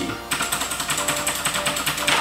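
Computer keyboard keys clicking in a fast, even run, about eight clicks a second, as the arrow keys are pressed over and over.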